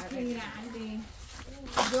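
Only quiet conversational speech: soft voices in the first second, a brief lull, then a voice again near the end.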